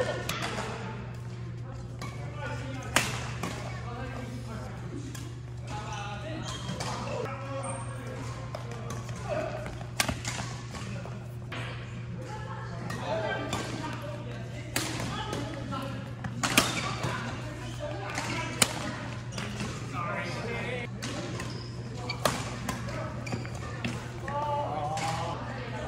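Badminton rackets striking a shuttlecock, sharp single cracks every few seconds at an irregular pace, over background chatter and a steady low hum.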